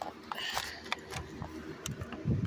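Handling noise as plush toys are moved about and rub against the phone: a soft rustle and a few light clicks and taps.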